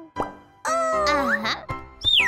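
A cartoon pop sound effect a moment in, as a thought bubble appears. After a short gap, background music comes in with a character's wordless vocal sound gliding up and down.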